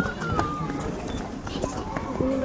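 Background voices of children and adults talking outdoors, with no one close by speaking. A brief, thin, high-pitched call in the first half-second.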